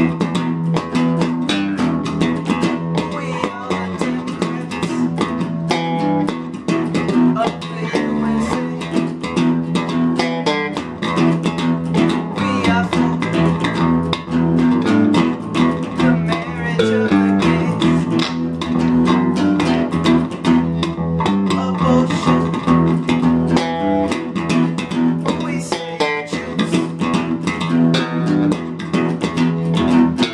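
Electric guitar and bass guitar playing together, with quick picked notes in a steady rhythm and no pauses.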